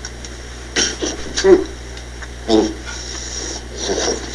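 Four or five short, muffled breaths and grunts from a man biting down on a mouth guard, about a second apart, over a steady low hum.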